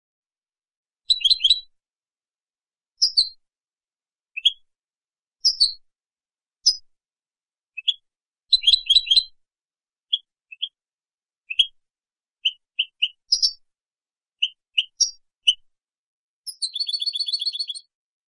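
European goldfinch (Carduelis carduelis) singing: a series of short, high twittering notes and quick phrases with brief gaps between them, ending near the end in a rapid buzzy trill about a second and a half long.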